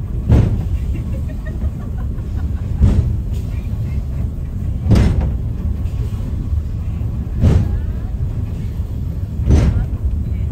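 Eizan Cable funicular car running down its track with a steady low rumble and a short knock about every two and a half seconds.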